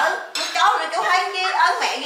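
A metal ladle clinking and scraping in a metal pot of cooked don clams, with voices talking over it.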